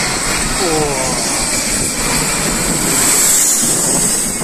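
Small jet aircraft on final approach passing low overhead, its jet engine noise swelling to its loudest about three seconds in.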